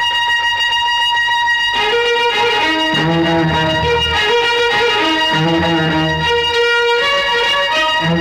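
Instrumental interlude of a Tamil film song: strings hold one long high note, then from about two seconds in a melody moves in short steps over a bass line.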